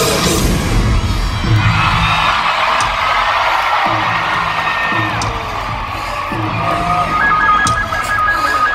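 Live band music over an arena sound system, recorded from among the crowd: deep bass notes pulse about once a second under the noise of the cheering crowd, and held synth tones come in near the end.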